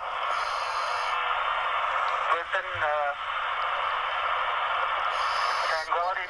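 Two-way radio channel held open, a steady static hiss with a brief, unclear voice about halfway through. A high electronic tone sounds near the start and again near the end.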